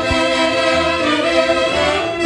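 Saxophone section of a tunantada band playing sustained chords in an instrumental passage, the notes shifting about halfway through. A low drum hit sounds just after the start.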